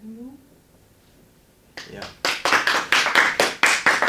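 A few people clapping their hands, starting about two seconds in with quick, dense claps.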